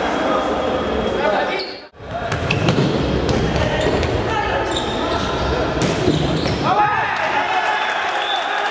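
Live sound of a futsal game in a reverberant sports hall: players shouting and calling to each other, with thuds of the ball on the wooden court. The sound cuts out briefly about two seconds in, and a rising and falling shout comes near the end.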